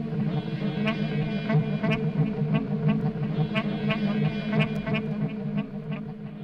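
Free improvisation on electric keyboards, synthesizer and reeds: sustained low drones under short, sharp pitched stabs that recur irregularly about twice a second, growing quieter near the end.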